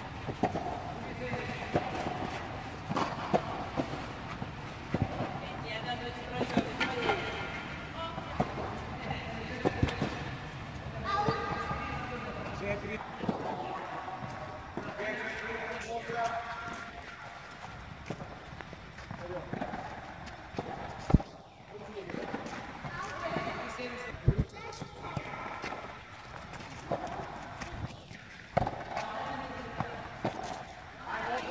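Children's voices talking and calling across the tennis hall, with scattered sharp knocks of tennis balls being struck by rackets and bouncing on the clay court. The loudest hits come about two-thirds of the way through.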